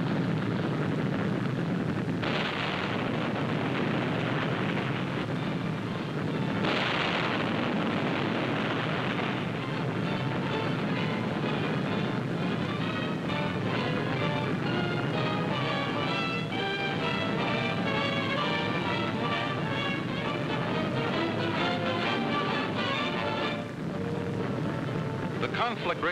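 Film soundtrack of a burning ship's exploding ordnance: a continuous low rumble with two louder blasts, about two and seven seconds in. From about ten seconds until near the end, music plays over the rumble.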